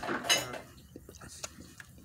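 A metal fork clicking and scraping lightly against a plastic plate of brownie and ice cream. There is a short rustle near the start, then a few small, faint clicks.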